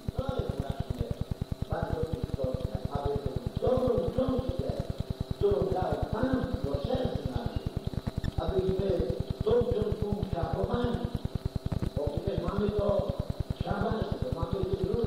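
A voice on an old, degraded archive recording, with a fast, regular low pulsing underneath.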